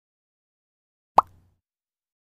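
A single short cartoon pop sound effect about a second in, marking a speech bubble popping up on screen.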